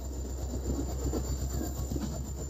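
Train running slowly: a steady low rumble with light irregular rattling of the carriage.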